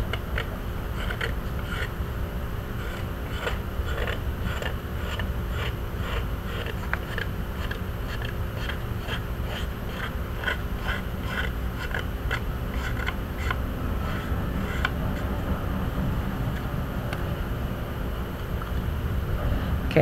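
X-Acto knife blade scraping the seam line off a wet, soft-fired porcelain greenware doll head: a run of short scraping strokes, a few a second, over a steady low hum.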